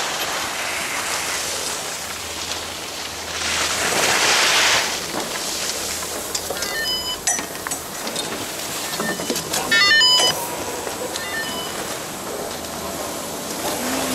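Skis sliding and scraping over packed snow, with a louder hiss of a skid stop about four seconds in. In the second half come a series of sharp clicks and short high metallic clinks from poles, skis and the metal turnstile gates at a chairlift entrance.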